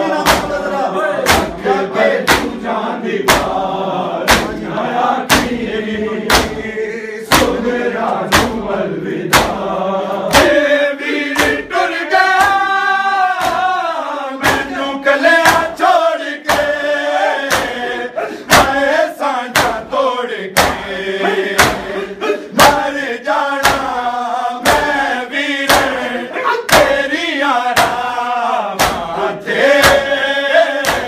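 A crowd of men slapping their chests in unison at a steady beat of about three slaps every two seconds (matam), with male voices chanting a noha over the beat.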